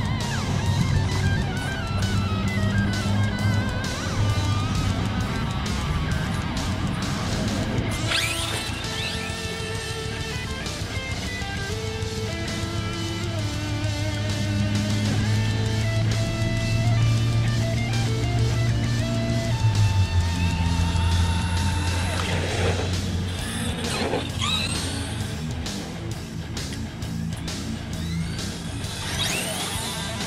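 Background rock music with electric guitar and a steady bass line. Over it, an RC truck's electric motor whine sweeps up in pitch a few times: once about a quarter of the way in, twice about three-quarters of the way in, and again at the very end.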